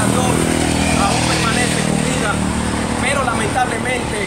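Small motorcycle passing along the road, its engine running steadily, with people talking in the background.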